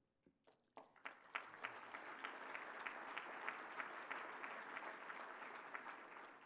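An audience applauding, starting about a second in after a brief hush and dying down near the end.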